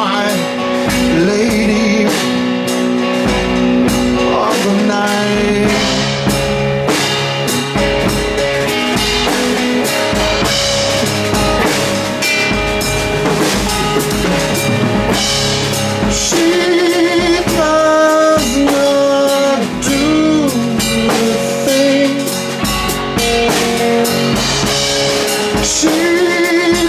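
Live blues-rock band playing an instrumental stretch: drum kit with cymbals, electric guitar, and a lap steel guitar whose held notes waver and slide.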